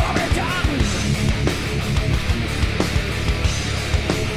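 Heavy metal band playing live: a driving guitar riff over steady, busy drums.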